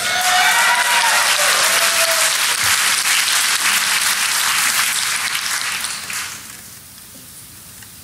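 Audience applauding and cheering, with a voice or two calling out in the first couple of seconds. The applause dies away about six seconds in.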